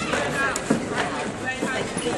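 Several people talking at once in the open air, with a few short knocks among the voices.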